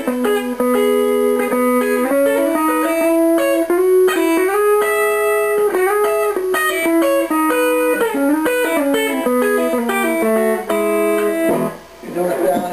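Fender Telecaster electric guitar playing a country lick of third intervals with pull-offs, in the key of E, moving up and down the neck with two notes often sounding together. The playing stops shortly before the end.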